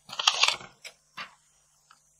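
Makeup brush and eyeshadow palette being handled: a short scratchy, crunchy rustle about half a second long, then a couple of small clicks.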